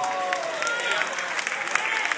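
A large congregation applauding in response to a line, with a few voices calling out over the clapping.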